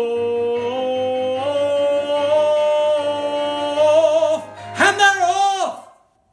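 A man singing the song's last held note, its pitch stepping up partway and wavering near the end, then a short closing phrase that bends in pitch and stops near the end.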